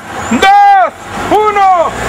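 Countdown sound effect: two pitched calls, each rising and then falling in pitch, about a second apart.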